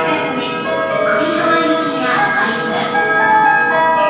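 A railway station platform melody played over the platform loudspeakers: a tune of bell-like chime notes, moving from note to note.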